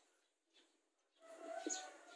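A dove cooing once in the background: one steady, drawn-out note about a second long, starting halfway in after a moment of near silence.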